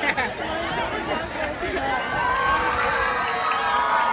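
A large crowd of students chattering and cheering, many voices overlapping, growing louder about halfway through.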